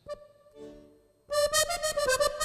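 Maugein chromatic button accordion: a few soft notes, then about one and a half seconds in it starts a tune loudly with full, held chords.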